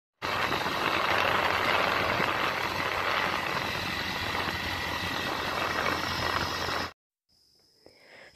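Motorcycle riding along a gravel road: a steady rush of wind and road noise over a low engine hum, cutting off abruptly about seven seconds in.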